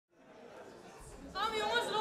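Chatter of voices in a large, echoing hall, fading in from silence, with one voice standing out from about a second and a half in.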